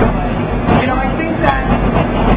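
Indistinct talking over steady crowd chatter, recorded through a phone's microphone that makes it sound dull and boxy.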